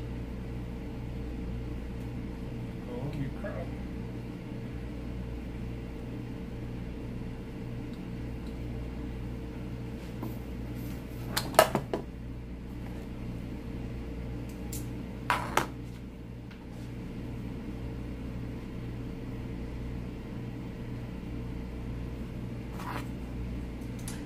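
A steady electrical hum, with a few sharp clicks from a hair-styling iron and comb being handled about halfway through.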